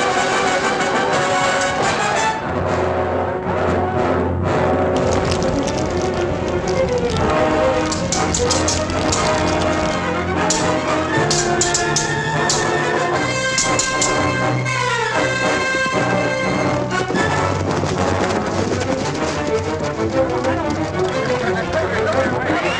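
Orchestral film score with prominent brass, played over the noise of a sword fight. A run of sharp clashes comes midway through.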